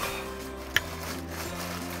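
Background music with held low notes that change in steps, and a single sharp click about three-quarters of a second in.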